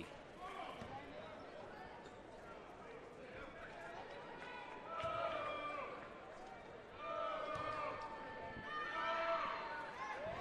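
Quiet basketball arena ambience with scattered voices from the crowd and the court, and a basketball bouncing on the hardwood as the free-throw shooter prepares.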